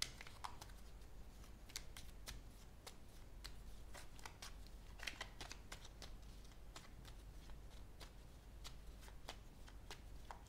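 A deck of tarot cards being shuffled by hand: quiet, irregular card clicks and flicks.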